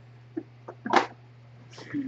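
A woman's stifled laugh, one loud breathy burst about a second in and another near the end, over a steady low hum.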